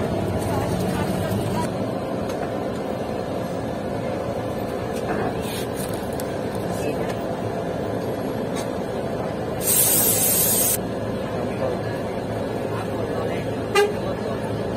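Steady rumble of a tour bus driving, heard from inside the passenger cabin. About ten seconds in, a loud hiss of compressed air from the bus's air system lasts about a second, and a short sharp sound comes just before the end.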